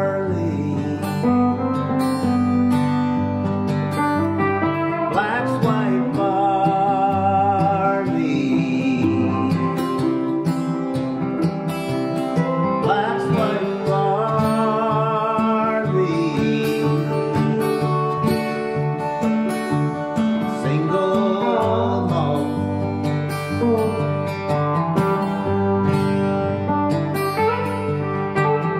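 Instrumental guitar break: a strummed acoustic guitar with an electric guitar playing a lead line over it, its notes wavering and sliding up and down.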